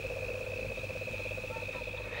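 Frogs and insects calling together: a fast pulsing trill and a steady high-pitched whine over a low hum.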